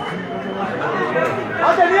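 Overlapping chatter of spectators in the stands of a football ground, several voices talking at once, with one voice coming in louder near the end.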